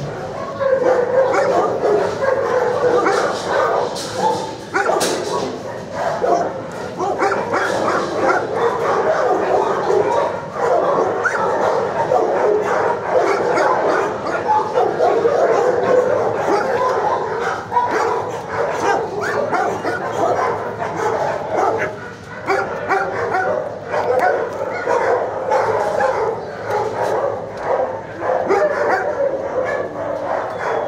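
Many dogs in a shelter kennel barking and yipping without a break, a dense overlapping chorus.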